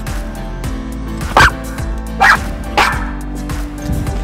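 A small dog barks three times, in short sharp yips, over steady background music.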